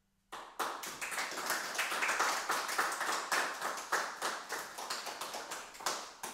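A small group of people clapping, starting suddenly just after the start and slowly dying away near the end.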